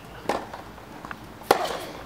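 Tennis ball struck by rackets during a baseline rally on a hard court: two sharp hits, the second about a second and a half in and the louder of the two.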